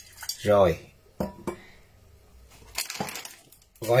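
Stainless steel pot and metal cup clinking as they are handled and set down: a few sharp metallic clinks about a second in, then a brief rustle near the end.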